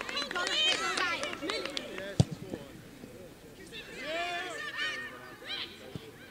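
Women footballers shouting and calling to each other on the pitch, short high-pitched calls in two spells, with one sharp thump about two seconds in.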